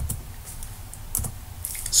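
A few separate key clicks on a computer keyboard, spaced irregularly across the two seconds, over a low steady hum.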